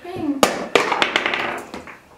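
A ball knocking sharply against a tabletop Skee-Ball game about half a second in, followed by a few lighter clicks, under voices.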